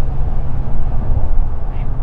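A loud, steady low rumble, with a faint trace of voice near the end.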